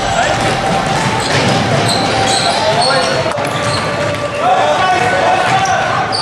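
Live sound of a youth basketball game in a gym: a basketball bouncing on the hardwood floor, with players' and spectators' voices calling out.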